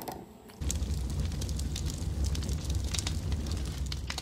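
Crackling, rumbling fire sound effect, with a steady low rumble and scattered sharp crackles, starting about half a second in.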